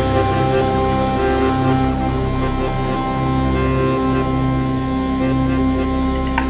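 Live accordion-led ethno-jazz trio: accordion holding sustained chords over synth bass, with a cymbal wash that fades after about two seconds.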